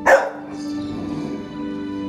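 Bernese mountain dog puppy barking once, a single short, loud bark right at the start.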